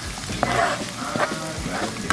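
Diced tomato and green pepper sizzling in hot oil as they are scraped into a frying pan of onion with a wooden spatula, with a few sharp knocks of the spatula.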